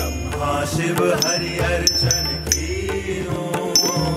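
Carnatic-style Bharatanatyam dance music: a voice singing in gliding, ornamented lines over a low drone, with small hand cymbals struck in a regular beat that ring after each strike.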